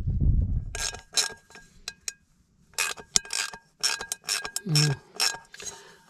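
Cooking pot and its handle being worked on in a repair: a string of sharp clicks and light metallic clinks, some with a brief ring.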